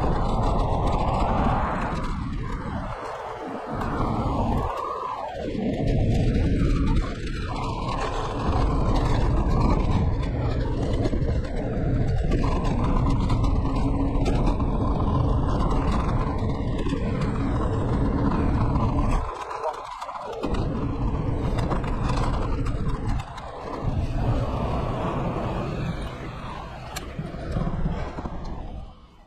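Wind rushing over the microphone and road rumble from a scooter riding along a street, heavy and low, dropping out briefly a few times as the wind buffeting changes.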